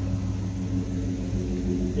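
A 2004 Mustang SVT Cobra's supercharged 4.6-litre V8 idling steadily. It runs through an exhaust with no catalytic converters and a small muffler.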